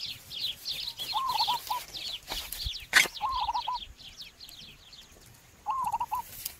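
Birds calling: a dense twittering of high chirps, with short groups of repeated hooked call notes, fading away in the second half. A single sharp knock comes about three seconds in.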